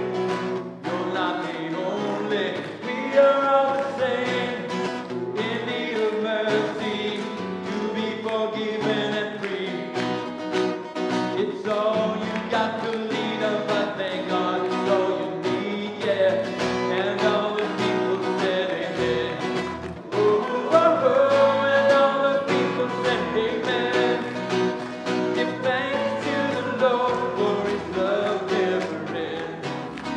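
Live worship song: a man singing lead while strumming an acoustic guitar, with a woman singing along.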